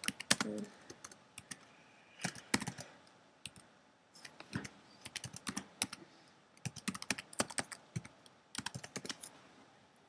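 Typing on a computer keyboard: runs of quick key clicks with short breaks, a pause of about half a second near the middle and another near the end.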